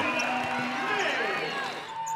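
Court sound of a women's basketball game in a gym: distant voices from players and a sparse crowd, with sneakers squeaking on the hardwood.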